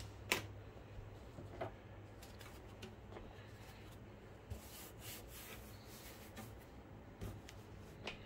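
Faint handling noises as projector parts and the plastic top cover are picked up: a light click just after the start, a few soft ticks, and a brief rustle around the middle, over a faint steady low hum.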